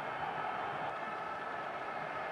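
A steady, even background noise with no distinct events.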